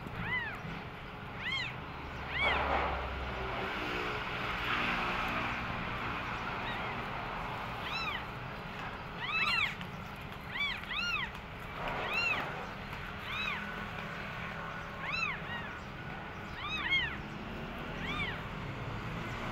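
Newborn kittens mewing: many short, high-pitched cries that rise and fall, coming every second or so.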